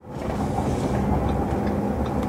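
Steady low rumble of a vehicle running, with a faint hum over it, cutting in suddenly.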